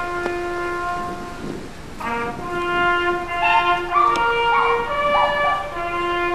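Brass band music playing slowly: held chords, with a melody moving above them about halfway through.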